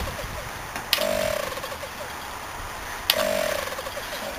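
Opened hermetic reciprocating fridge compressor running on a high-start-torque relay and 60 µF start capacitor, with a steady low mechanical hum. A sharp click, followed by a brief tone of about half a second, comes about a second in and again about three seconds in.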